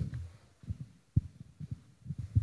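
A handheld microphone being handled, giving several short, dull knocks, the strongest a little over a second in.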